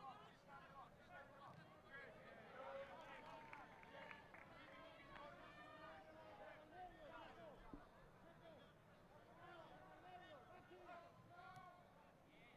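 Faint shouts and calls of football players on the pitch, several voices overlapping, over quiet stadium ambience.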